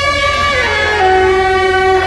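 Beiguan street music led by suona, the Chinese double-reed shawm, playing a loud sustained melody. The pitch steps down about half a second in and then holds a lower note.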